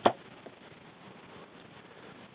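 A compound bow being shot: one sharp snap as the string is released on a broadhead-tipped arrow, followed by a faint tick about half a second later.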